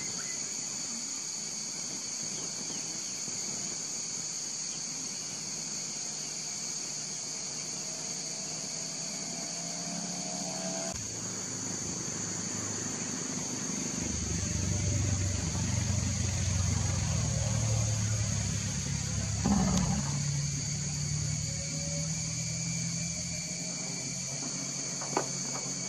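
A steady, high-pitched drone of forest insects (cicadas or crickets) runs throughout. A low hum of unclear source comes in partway through and is loudest in the middle and late part.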